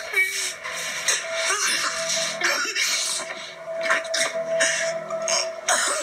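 Television drama soundtrack playing: a quiet, sustained music score built on one long held note, with brief snatches of speech.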